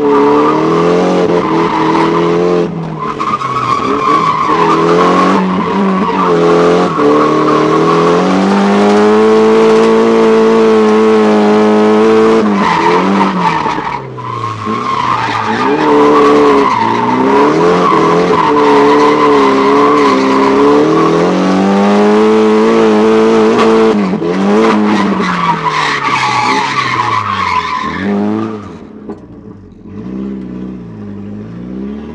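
Nissan Silvia S14's SR20 four-cylinder engine, heard from inside the cabin, held at high revs through drifts, the revs dipping and climbing back several times, with the tyres sliding. Near the end the revs and the loudness drop.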